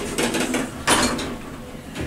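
Westinghouse elevator's two-speed sliding doors running shut, ending in a sharp clunk about a second in as they close.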